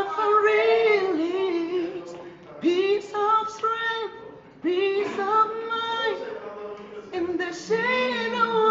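A young man singing solo and unaccompanied, in long held notes that slide between pitches, phrase after phrase with short breaths between.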